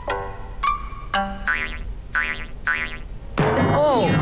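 Comedy sound-effect music: a run of six or so short pitched notes, several bending up and back down in pitch, then a falling slide near the end.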